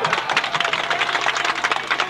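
A crowd of fans clapping their hands: a dense, uneven patter of many handclaps, with faint voices underneath.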